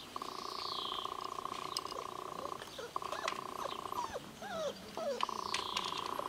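A steady, finely pulsed trill comes in long stretches, stopping and restarting twice. In the gaps there are short rising and falling squeaky whines from young puppies, and a high chirp near the start.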